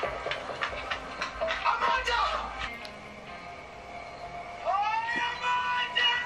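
Soundtrack of a drama series playing on a tablet's speaker: music and brief dialogue, then from about five seconds in one long held note.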